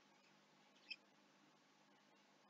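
Near silence: room tone in a pause between spoken sentences, with one faint, very short high-pitched chirp about a second in.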